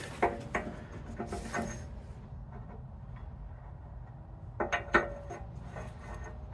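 Light metallic clinks and taps of a steel retaining pin and dowel being handled against a hydraulic breaker's steel body: a few in the first second and a half, then a short cluster about four and a half seconds in.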